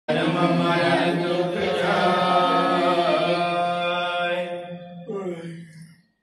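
A man's voice chanting one long, steady held note in a Sikh liturgical recitation, fading out about five seconds in.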